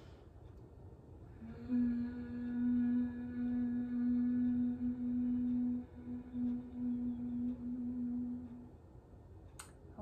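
Closed-lip humming on the out-breath in yoga bumblebee breath (bhramari): one long, steady, low hum held for about seven seconds, beginning a second or two in.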